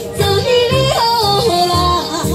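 Amplified live music: electronic keyboard backing with a steady beat under a melody line that climbs in steps, then falls back.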